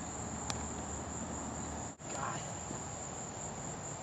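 Steady, high-pitched chorus of insects chirring over outdoor field ambience. There is one sharp click about half a second in and a brief gap in the sound about halfway through.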